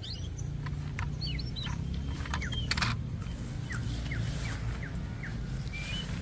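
Birds chirping in short, quick falling notes, with a run of about six evenly spaced chirps in the second half, over a low steady rumble and a single click.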